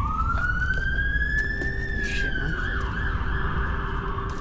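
Emergency vehicle siren wailing, its pitch rising slowly through the first two seconds and then falling away, over a low rumble.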